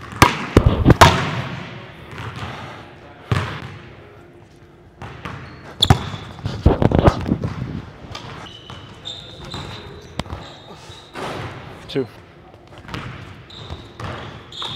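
Basketball bouncing on a hardwood gym floor: a quick run of sharp bounces near the start, then single bounces scattered through the rest, ringing in the large hall.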